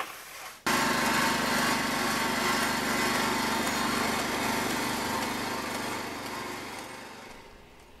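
Small engine of an Iseki riding rice transplanter running steadily as it plants seedlings. It starts abruptly about a second in and fades away over the last few seconds.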